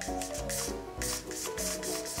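Aerosol can of Got2b Glued Freeze hairspray sprayed in short hissing bursts, about four or five in quick succession, over background music.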